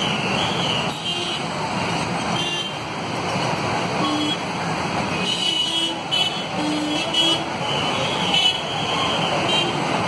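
Slow, dense road traffic of motorcycles, cars and SUVs passing close by, engines running, with several short horn toots in the middle of the stretch.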